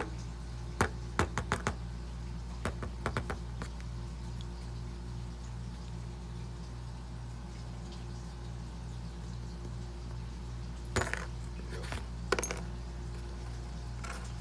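Metal clinks and taps from a Honda VTEC rocker arm being handled to work its lock pin out, in quick runs of sharp clicks near the start, then two short clusters near the end. A steady low hum runs underneath.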